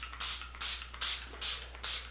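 Urban Decay All Nighter setting spray pump bottle misting the face: five quick hissing spritzes, about two or three a second.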